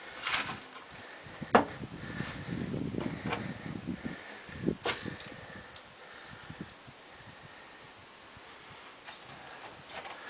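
Scattered sharp knocks and clicks with shuffling noise in between, from someone moving about and handling things inside a stripped, rusted bus body; it goes quieter from about halfway through.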